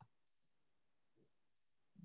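Near silence, broken by two faint, short clicks.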